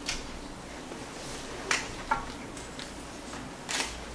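A few short, sharp clicks and taps over steady room noise, the loudest near the end, from handling at a laptop on the table.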